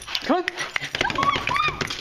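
A person calls "Come on!" once to coax a dog, then the dog gives two short, high whimpers.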